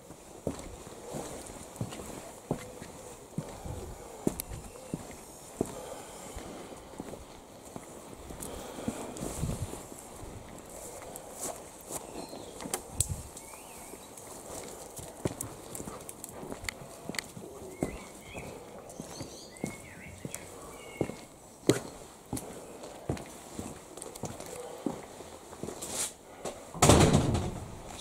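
Footsteps on paving and concrete steps, an irregular run of light treads and knocks. A voice comes in just before the end.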